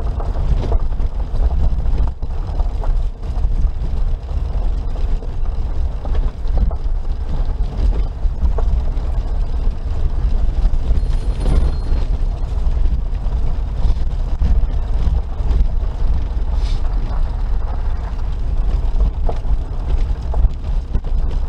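Suzuki Jimny Sierra JB43 driving along a gravel road: a steady low rumble of its engine and tyres on the gravel, with scattered clicks and knocks from stones and rattles.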